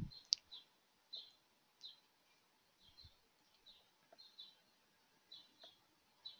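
A bird chirping faintly, short high chirps repeating irregularly every second or so over quiet room tone.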